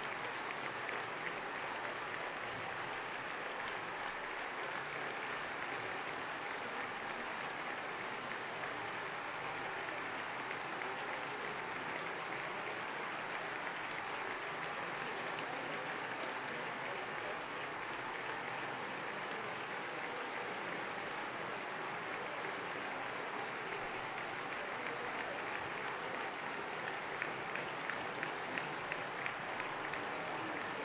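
Long, sustained applause from a large parliamentary assembly at steady loudness. Near the end sharper claps stand out about twice a second, as the clapping starts to fall into a rhythm.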